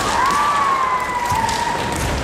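A kendo competitor's kiai: one long, high yell held for nearly two seconds and slowly falling in pitch, heard over the noise of a large hall.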